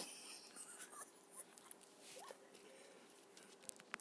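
Faint scratching and rustling of a small dog's paws and a plush stuffed toy rubbing on carpet as the dog humps the toy, over a faint steady hum. A few sharp clicks come near the end.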